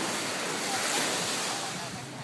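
Beach ambience: a steady rushing hiss of gentle surf mixed with wind blowing across the microphone.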